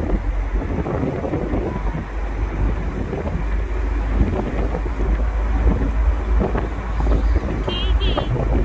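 Wind buffeting the microphone from a moving car, over a steady low rumble of the car and road.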